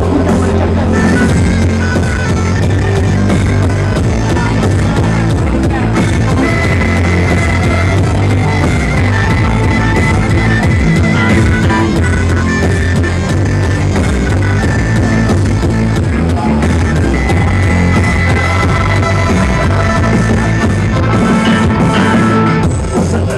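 A live band playing loud reggae-rock with electric bass and electric guitar, the bass line strong and steady underneath.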